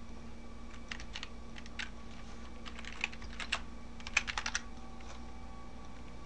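Computer keyboard keystrokes in short scattered runs, with a quick burst of several keys about four seconds in, over a low steady hum.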